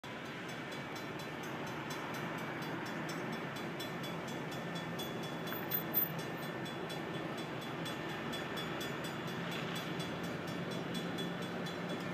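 Railroad grade-crossing warning bell ringing in an even rhythm, signalling an approaching train, with two brief knocks about six seconds in.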